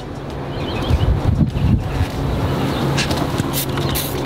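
Wind buffeting the microphone over a steady low hum, then three short hisses near the end from a trigger spray bottle of tire dressing being squirted onto a tire.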